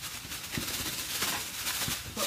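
Plastic carrier bag rustling and crinkling, with scattered knocks, as it is worked around a wasp nest on a ceiling.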